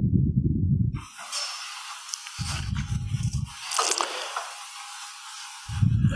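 Breathing into a head-worn microphone: breath puffs striking the mic give loud low rumbles at the start and again about two and a half seconds in, with a long hissing breath running between them.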